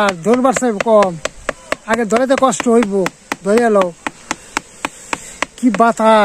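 A stick beating a woven bamboo winnowing tray (kula) in a steady rhythm of about four sharp taps a second, a ritual beating meant to drive off evil spirits. A woman chants the same short syllable-phrase over and over in bursts along with it.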